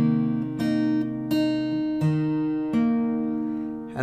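Acoustic guitar with a capo on the first fret, played fingerstyle: a slow run of about six single plucked notes, roughly two-thirds of a second apart, each left to ring into the next.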